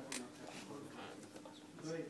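Faint, indistinct voices talking on a TV studio set, heard from off the set, over a steady low hum.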